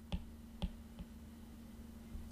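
Stylus tapping on a tablet screen while handwriting: three light clicks, the last one fainter, over a faint steady hum.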